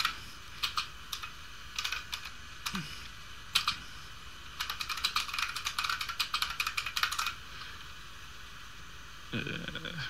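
Computer keyboard being typed on, in short bursts of keystrokes with brief pauses. The typing stops about seven seconds in.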